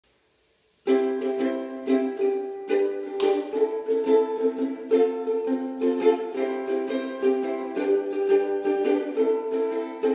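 Ukulele played in a repeating pattern of plucked chords, starting about a second in, in a small room.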